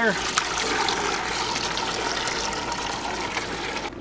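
Water from a garden hose pouring into a steel ammo can, a steady rush that slowly softens as the can fills and cuts off just before the end.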